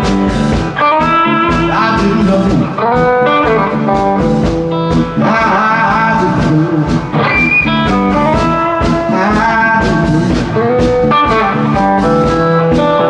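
Live blues band playing an instrumental passage: a Telecaster-style electric guitar leads with bent notes over bass and a steady drum beat.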